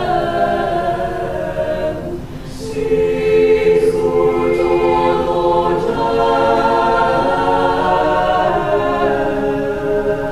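Mixed-voice choir singing unaccompanied in held, slowly moving chords. About two seconds in the sound thins briefly at a phrase break, then the voices come back fuller and louder.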